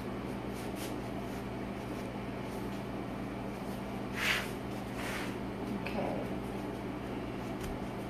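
Steady hum of a wall-mounted air conditioner, with a short soft hiss about four seconds in and a fainter one a second later.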